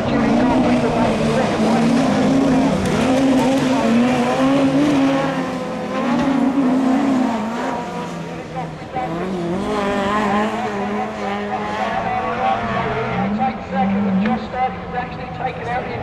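Super Modified rallycross cars racing hard, their engines revving up and down through gear changes as they pass close by. The engines are loudest over the first few seconds, ease off about eight seconds in, and come up again after ten seconds.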